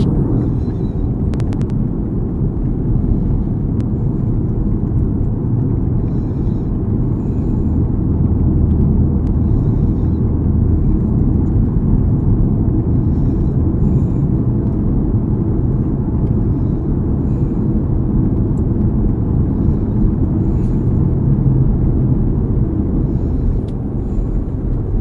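Steady low road and tyre noise inside a Toyota's cabin at freeway speed.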